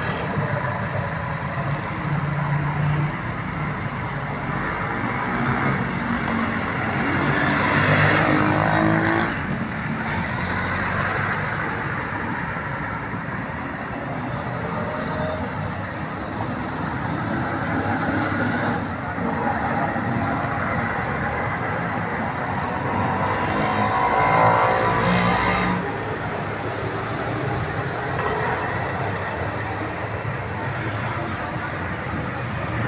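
Steady road traffic noise, with a vehicle going by louder about eight seconds in and another about twenty-five seconds in.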